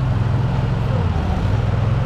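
Heavy diesel engine idling steadily, a low even hum.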